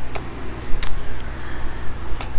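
Oracle cards being shuffled and laid down on a table, with two short card snaps, one just after the start and one near the middle, over a steady low hum.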